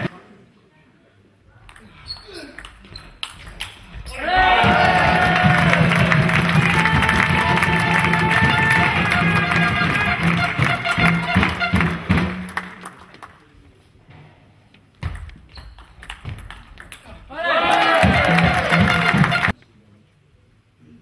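Table tennis ball clicking off the bats and table in a sports hall. Twice it is drowned out by long, loud stretches of voices and music that start and stop abruptly.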